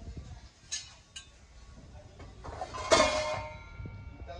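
Hammered brass pots being handled: two light clinks, then a louder clank about three seconds in that leaves the brass ringing briefly.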